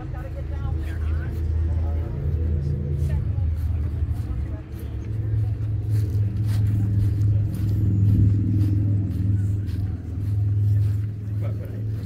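A vehicle engine running steadily with a low hum, its pitch stepping up about five seconds in, with voices in the background.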